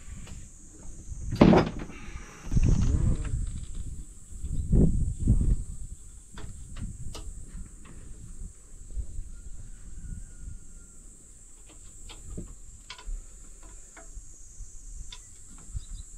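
Hands working ignition parts on a stationary gasoline marine engine, its spark plug leads and distributor cap being taken off. Irregular knocks and rustles, loudest about a second and a half in and again about five seconds in, then scattered small clicks.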